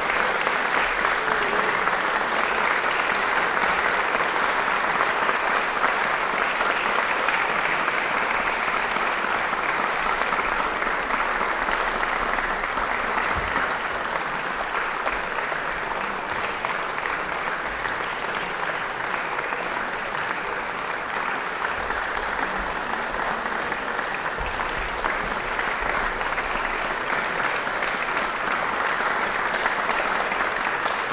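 Audience applauding, a steady round of many hands clapping that eases off slightly midway and picks up again.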